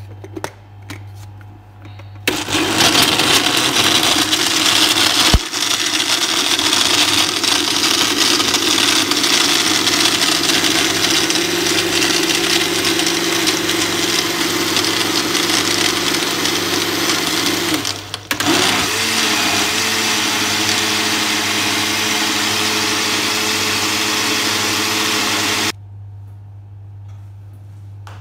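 Countertop blender running, blending avocado, milk and ice into a shake. It starts about two seconds in, stops briefly and restarts about two-thirds of the way through, then cuts off suddenly a couple of seconds before the end.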